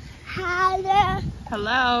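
A toddler's voice calling out twice in long, high-pitched cries, the second bending up and then down.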